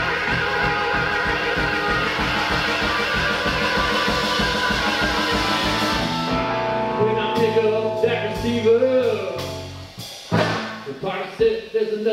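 Live electric blues band playing: for the first half, the full band with drums and bass keeps a steady beat; then it thins out to electric guitar notes that bend up and down in pitch.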